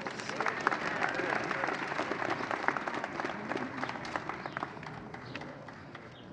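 Applause from a crowd, many hands clapping, thinning out toward the end, with a few voices faintly under it.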